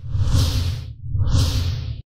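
Two whoosh sound effects from an animated title intro, about a second apart. Each swells and fades as a hiss over a deep low rumble.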